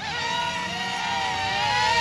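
Sharper Image Thunderbolt toy drone's four small electric rotors whining in flight, the pitch wavering with the throttle and growing louder as the drone comes in close.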